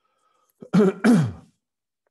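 A man clearing his throat in two quick bursts about a second in, the second falling in pitch.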